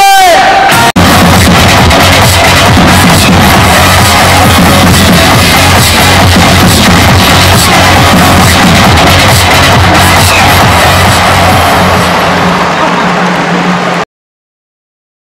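Loud ballpark cheer music over the stadium speakers, with a steady thumping beat and crowd noise mixed in. It drops out for an instant about a second in and eases slightly near the end.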